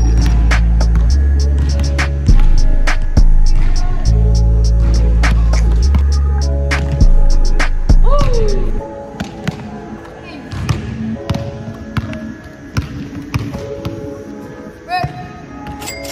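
Basketball bouncing on a hardwood gym floor in one-on-one play, over music with a heavy bass line that stops about nine seconds in. After that the bounces and a few short squeaks are heard on their own.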